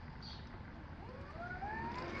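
Hayward GVA-24 valve actuator motor running as it turns the valve over to spa mode, over a steady background hum; about a second in a whine starts and rises steadily in pitch.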